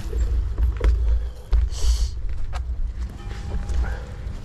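Mountain bike being hauled over fallen branches and logs: scattered knocks and clatters, with a short hiss about halfway through, over a steady low rumble on the microphone.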